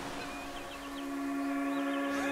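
The song's intro fading in: one steady, low held note with softer overtones above it swells as the sound of surf thins out, with a few faint wavering glides higher up.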